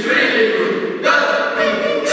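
A group of voices singing together in chorus without instruments, in two held phrases, the second starting about a second in.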